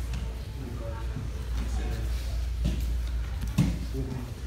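Indistinct background voices of people talking in a gym over a steady low hum, with two dull thumps near the end, the second louder.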